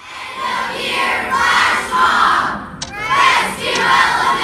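A large group of children shouting and cheering together, coming in suddenly with a short dip a little before the three-second mark.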